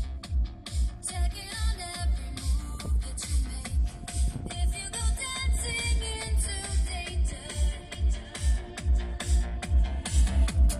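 Electronic dance music played loud through a car audio system with two subwoofers in an open hatchback boot, a heavy bass beat thumping about twice a second.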